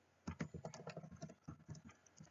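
Computer keyboard being typed on, a quick run of keystrokes entering a string of digits, starting about a quarter second in.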